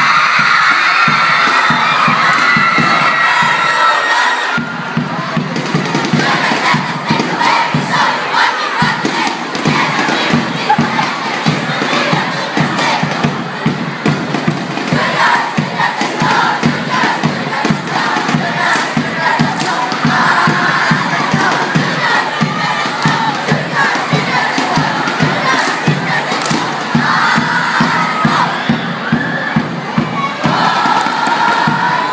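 Large crowd of students cheering and shouting through a cheer routine, with loud shouting in unison. From about four seconds in, a steady beat of about two to three strokes a second runs under the crowd.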